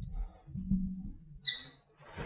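Marker pen squeaking on a glass lightboard as words are written: several short, high-pitched squeaks, the strongest about one and a half seconds in.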